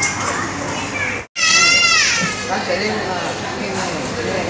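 Restaurant chatter with overlapping voices. The sound drops out abruptly about a second in, then a child's loud, high-pitched shriek falls in pitch over half a second, and the murmur of voices continues.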